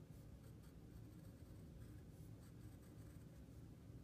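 Faint scratching of a graphite pencil tracing the lines of a sketch on paper, in short irregular strokes, to transfer them onto the watercolour paper beneath.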